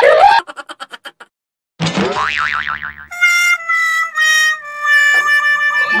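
Comedic sound effects edited into the video: a quick run of fading clicks, then a springy boing, then a reedy descending 'wah-wah' fail sting of a few stepped notes, the last held longest.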